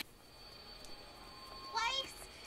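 Quiet background with a faint steady tone. About a second and a half in, a high-pitched female voice from the animated show begins, its pitch sliding up and down.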